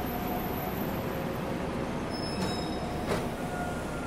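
Metro train running: a steady rumble with faint thin whines and a couple of sharp clicks past halfway.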